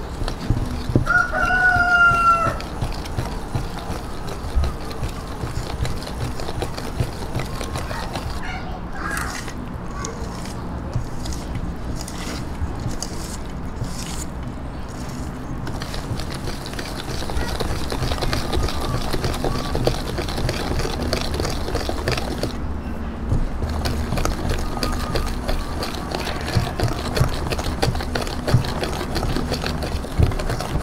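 Wire whisk beating flour, eggs and milk into batter in a stainless steel bowl, a steady run of clicks and scrapes against the metal. A rooster crows once about a second in.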